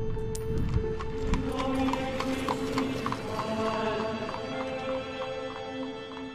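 Intro music with horses' hooves clip-clopping, as of horse-drawn carriages on a street, starting to fade near the end.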